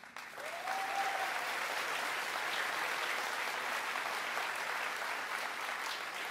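Large rally crowd applauding. The clapping swells up within the first second and then holds steady.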